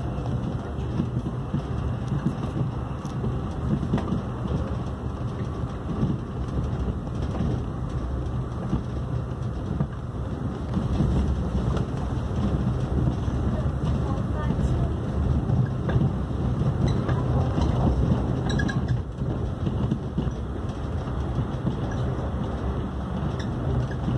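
Interior running noise of an AREX 1000 series electric express train at speed: a steady low rumble of wheels on rail and car-body noise, heard sped up fourfold.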